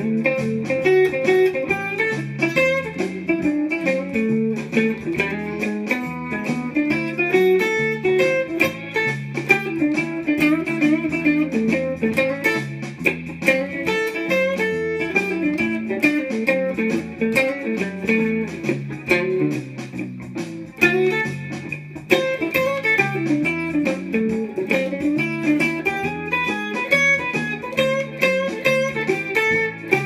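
Electric guitar playing single-note blues lead lines over a 12-bar blues backing track in A, aiming for the third of each chord as the chords change, often approached from a half step below.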